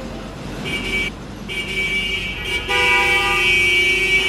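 A vehicle horn sounding in held tones over a low background rumble. It starts about half a second in and breaks off briefly around one second. A louder, lower tone joins a little under three seconds in.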